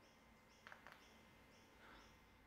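Near silence: room tone, with a few faint high chirps and a couple of faint clicks about two-thirds of a second in.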